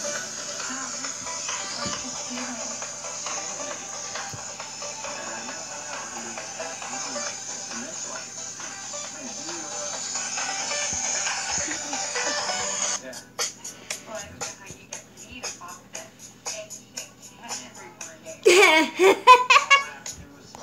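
A tablet's speaker plays a video's soundtrack, music with voices, which cuts off about two-thirds of the way in. A run of quick plastic clicks follows for several seconds: the Bean Boozled spinner wheel being spun. Near the end comes a short, loud burst of a child's voice.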